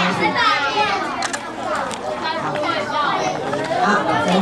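A group of children chattering and calling out over one another, several voices at once with no pause.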